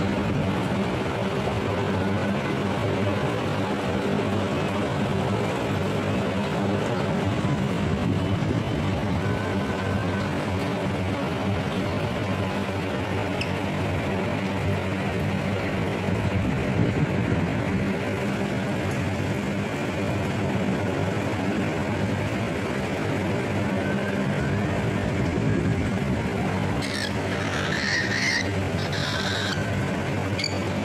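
A steady hum and noise throughout, with a few short, high cockatiel chirps near the end.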